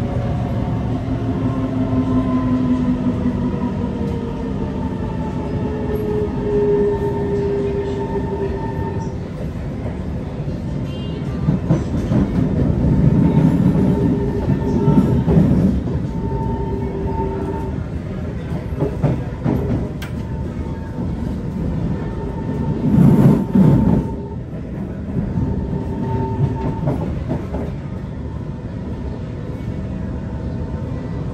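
Inside a C151 metro train car with Mitsubishi Electric GTO chopper traction motors: the car rumbles steadily while the motors' faint tones slide down in pitch over the first few seconds, then hold steady, coming and going. Louder swells of rushing rumble come about twelve to sixteen seconds in and again around twenty-three seconds.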